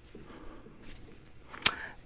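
Faint rustling of clothing, then a single sharp snap or smack about one and a half seconds in.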